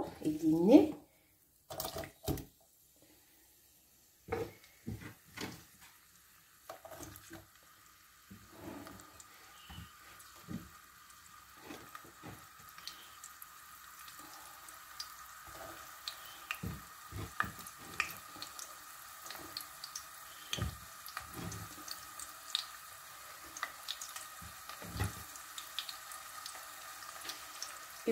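A few knocks of utensils on a pot. Then, from about 8 s, a steady soft sizzle builds as chopped onions begin to fry in oil in an enamel pot, with small crackles and clicks running through it.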